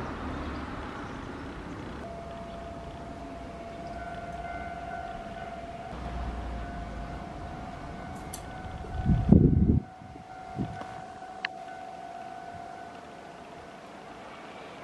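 A distant siren sounding one steady tone for about ten seconds. About nine seconds in there is a brief loud low rumble.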